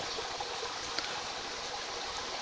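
Shallow creek water flowing and trickling steadily, with a faint click about a second in.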